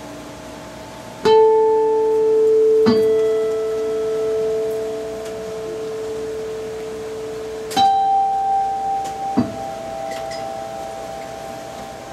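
Two acoustic-electric guitars playing slow, sparse notes: four separate plucks, each left ringing for several seconds, the first about a second in and the last about nine and a half seconds in.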